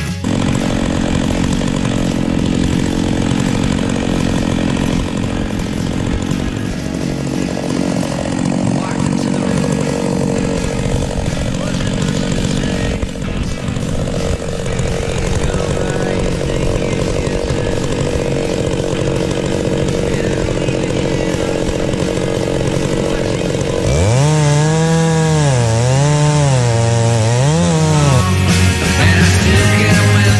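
Stihl MS660 two-stroke chainsaw running in an Alaskan chainsaw mill, ripping a log of red stringybark. Near the end the engine's pitch rises and falls several times as it works under load in the cut.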